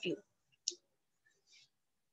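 The last syllable of a spoken word, then a single short, sharp click about two-thirds of a second in, followed by a faint soft noise; otherwise quiet.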